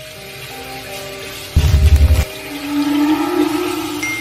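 Eerie background music of long held tones. About a second and a half in comes a loud low thud lasting over half a second, then a low tone swells up near the end.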